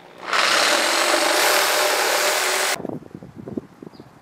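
Hand-held power tool cutting a freehand bevel into the end of a wooden fence post. It runs loud and steady for about two and a half seconds, then stops abruptly.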